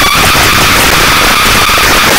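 Harsh, dense noise from a software modular synth patch: an Instruo Cš-L oscillator feeding Macro Oscillator 2 (Plaits) in VCV Rack. A whistling tone that has just glided down holds steady over the noise and drops out near the end.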